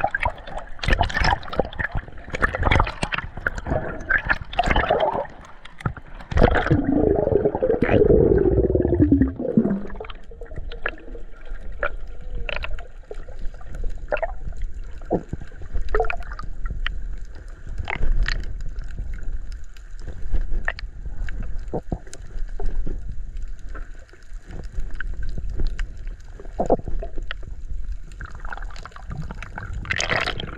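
Water gurgling and bubbling heard from underwater, muffled. It churns busily for the first several seconds, with a long falling tone a few seconds later, then settles to a quieter burble with scattered clicks.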